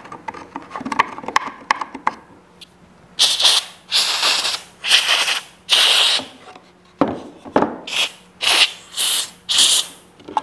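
A few light clicks and knocks of a hand tool working in the holes of a wooden chair seat. Then, from about three seconds in, a compressed-air blow gun fires a run of short hissing blasts, about eight or nine in a row, blowing the holes clean.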